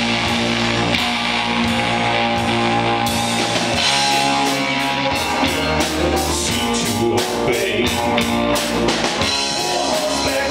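Live rock band playing loudly: electric bass guitar and drum kit, with the drums hitting harder and more regularly from about halfway through. A man sings into the microphone in the second half.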